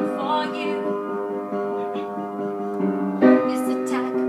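Upright piano played in held chords with a woman singing. Her sung line ends just after the start, the piano sustains alone through the middle, and a new chord is struck a little after three seconds in.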